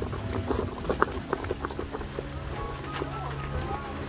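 Hurried footsteps heard through a body-worn camera: an irregular run of soft thuds and clicks, several a second, as the wearer goes quickly down a slope, with the camera jostling against him.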